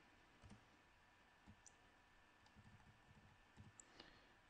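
Near silence, with a few faint clicks of computer keyboard keys being typed.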